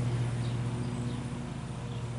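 A steady, low engine hum at a constant speed.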